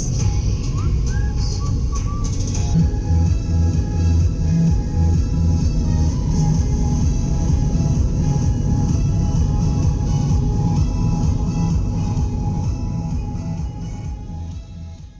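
Background music: an upbeat instrumental track with a steady bass beat, starting to fade out near the end.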